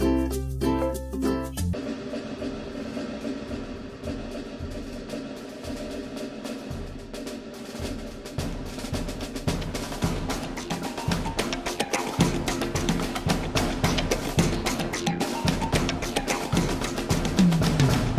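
Background music: a short jingle of bright pitched notes ends about two seconds in, then a track with a steady drum beat plays, growing louder towards the end.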